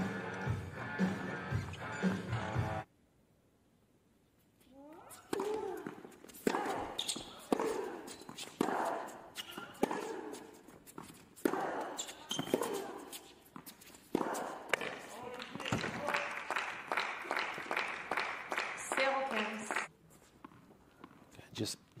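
A short music sting ends about three seconds in. After a brief gap comes a tennis rally on an indoor hard court: racket strikes on the ball about once a second, each with a player's grunt, and shoe squeaks toward the end.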